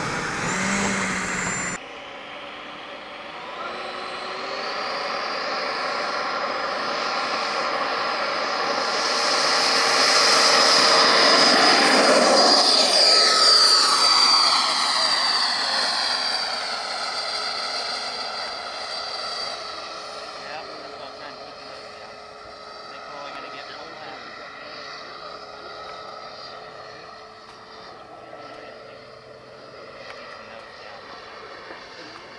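Dynamax Xtreme Pro 127 mm electric ducted fan of a large RC model jet, whining steadily at or near full throttle in flight. It grows louder to a peak about halfway through as the model passes, with a sweeping, swirling change in tone, then fades as it flies away.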